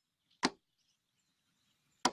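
Edited-in transition sound effect: one short, sharp swoosh about half a second in, with the next one just starting at the very end.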